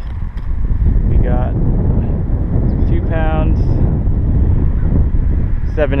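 Wind buffeting the microphone: a loud, steady low rumble that picks up about half a second in.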